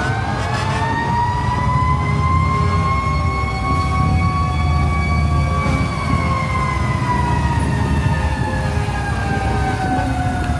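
A siren winds up to one high tone, holds it, and then slowly falls in pitch from about halfway through, over a steady low rumble.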